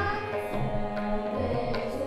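Sikh kirtan: a girl's voice singing a devotional hymn over harmonium and string accompaniment, with tabla strokes keeping the beat.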